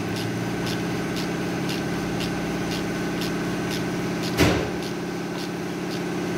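Ratchet wrench clicking about twice a second as a socket is worked in a car's engine bay, over a steady mechanical hum. One loud knock comes a little past four seconds in.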